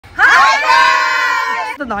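A group of young men and women shouting together in one long, high-pitched cheer lasting about a second and a half.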